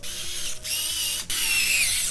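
Small electric screwdriver running with a high whine, driving screws to fasten a water-cooling radiator to a PC case, with two brief stops.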